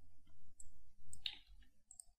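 A few faint, short clicks, spaced over the two seconds, from working a computer keyboard and mouse.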